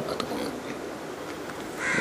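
A plastic Rubik's cube being turned by hand, its layers giving a few faint clicks, with a short harsh, rasping sound near the end.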